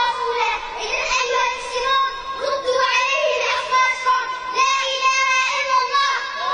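A young girl's voice chanting in short rising and falling phrases into a PA microphone, over a steady ringing tone.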